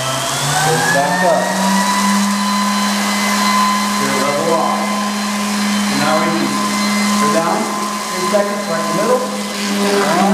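Electric concrete vibrator (Sure Speed flexible-shaft unit) running with a steady high hum, its vibrating head immersed in fresh concrete to consolidate a test mix. The pitch rises about a second in and then holds steady.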